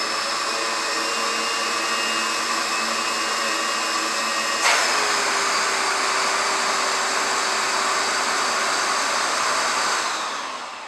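Numatic NDD 900A vacuum extractor running with its hose end closed off by a palm, cutting the airflow as a full bag would. About halfway through, a sharp pop as the hose is opened, after which the machine settles to a single steady, slightly louder note.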